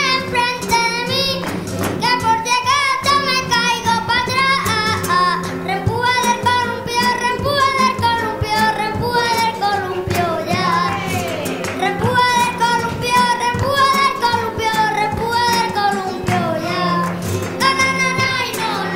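A child singing flamenco into a microphone, long held lines with wavering, ornamented turns, over flamenco guitar and rhythmic hand-clapping (palmas) from the other children.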